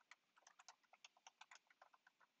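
Faint computer keyboard typing: a quick, uneven run of key clicks, several a second, as a short command is typed.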